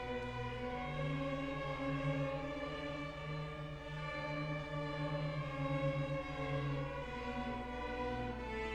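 Beginning student string orchestra of violins, cellos and double basses playing together in held, bowed notes that step from one pitch to the next about every second or two.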